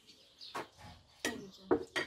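A few short clinks and knocks of tea glasses and plates at a breakfast table, the loudest near the end, with birds chirping faintly.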